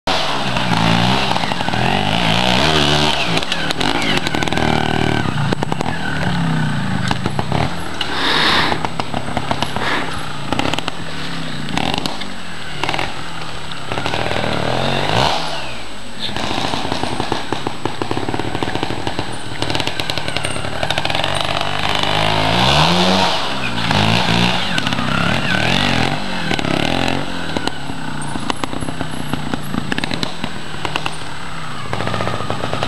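Trials motorcycle engine revving up and down again and again. Its pitch rises and falls with repeated bursts of throttle.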